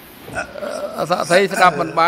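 A man starts speaking about half a second in, after a brief faint hiss.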